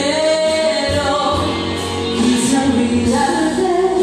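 A woman singing into a microphone over karaoke backing music, holding notes that bend in pitch.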